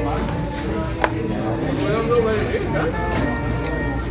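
Indistinct voices and music in a fast-food dining room, with a single sharp click about a second in.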